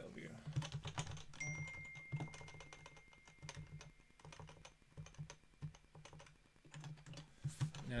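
Typing on a computer keyboard: rapid, irregular keystroke clicks in quick runs with short pauses, fewer in the middle. A faint steady high tone lasts for a few seconds about a second in.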